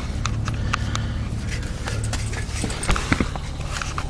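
Steady low hum of the pickup running in its cab, with a scattering of light clicks and knocks from handling close to the microphone.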